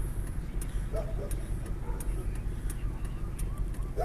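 Car engine running at low revs, a steady low rumble heard from inside the cabin, with faint light ticking over it.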